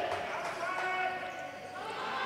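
Faint, distant voices of players on an indoor basketball court, with the hall's low background.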